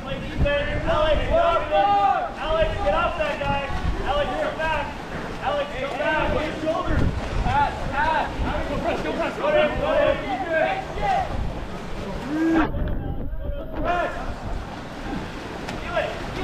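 Indistinct shouting and calling from water polo players and onlookers, over the splashing of swimmers in a pool, with wind on the microphone.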